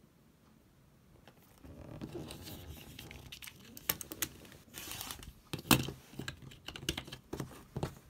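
OLFA rotary cutter rolling through cotton fabric along an acrylic ruler on a cutting mat: a gritty scraping starting about a second and a half in. Several sharp clicks and knocks come from the ruler and cutter being handled, the loudest a little before six seconds in.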